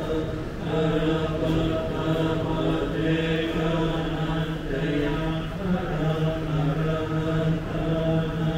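Buddhist chanting in Pali by low voices, held on nearly one pitch in long unbroken phrases, running steadily.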